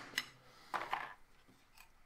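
One light mallet tap on a steel chisel cutting into aluminum, just after the start. About a second in comes a short clatter as the chisel is handled and set down.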